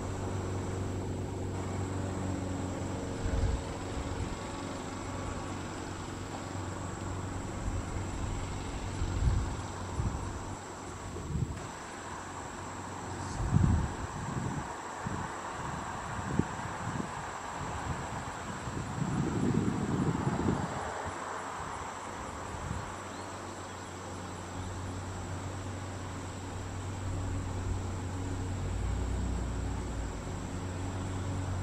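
Steady low hum of indoor room tone with a faint, thin high-pitched drone over it. Several short low thumps come through the middle, along with a muffled swell of noise that rises and fades.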